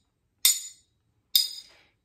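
Metal fork and spoon struck together twice, keeping a steady beat about a second apart; each clink rings briefly.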